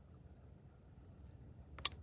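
Quiet room tone while the S button of a CareSens N blood glucose meter is held down, then one short sharp click near the end as the button is let go and the meter switches off.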